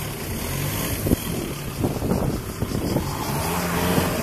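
Car engines running in slow, jammed traffic: a steady low engine hum, with a brief knock about a second in.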